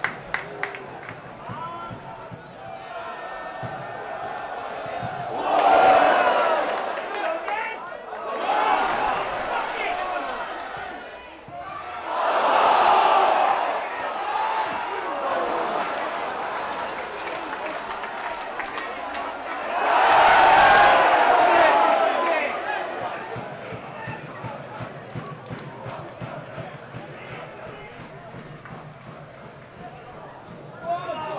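Football crowd on the terraces of a small ground: a steady murmur broken by four loud swells of shouting, about six, nine, thirteen and twenty-one seconds in, each fading away again.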